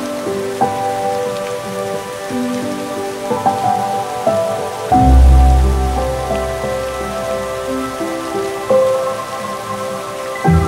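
Background instrumental music: a slow melody of single notes over an even, rain-like hiss, with a deep bass note coming in about halfway.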